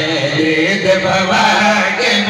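Several men chanting a devotional qasida into microphones, voices rising and falling over a steady held note.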